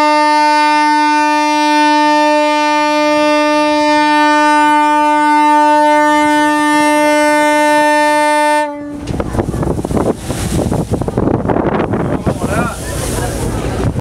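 A ship's horn sounding one long, steady blast that cuts off about nine seconds in, followed by wind and sea noise.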